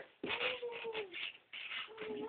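A pet animal's drawn-out whining cry, held for about a second and dropping in pitch at the end, as it strains to pull itself up.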